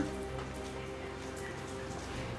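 Soft background music score of sustained, held notes.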